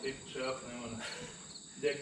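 Insects chirping in a steady, regular pulse of short high chirps, about four a second, under men's voices talking indistinctly.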